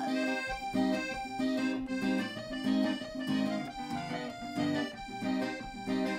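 Piano accordion and acoustic guitar playing an instrumental passage together. The accordion holds sustained reedy chords in a steady, even rhythm over light guitar strumming.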